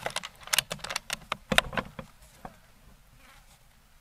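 A rapid, irregular run of sharp clicks and taps close to the microphone, thinning out about two and a half seconds in.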